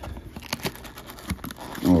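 Cardboard trading-card box being opened by hand: light scraping and a few small, scattered clicks as the top flap is pried up and pulled open.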